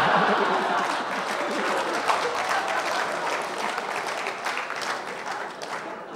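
Comedy club audience laughing and applauding after a punchline. The clapping is loudest at the start and slowly dies away.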